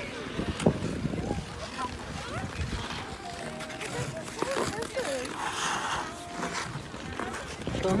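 Ice skate blades scraping and gliding on ice in uneven strokes, with faint voices talking in the background.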